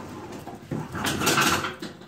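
Split firewood being picked up from the pile beside a wood stove: bark scraping and logs rubbing and knocking together, loudest about a second in.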